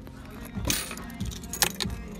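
Coins and metal parts of a bulk vending machine rattling and clinking as they are handled, in two short bursts, one just over half a second in and one near the end.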